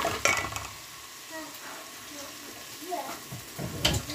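Ginger-garlic paste frying in oil in a metal pot, sizzling quietly while a spoon stirs it, with the spoon clicking against the pot at the start and knocking once near the end.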